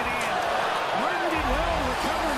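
A man's voice over steady arena crowd noise.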